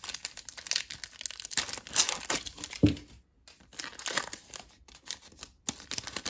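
Foil wrapper of a trading-card pack being torn open and crinkled in the hands, an irregular crackling with a soft bump about three seconds in and a brief pause after it.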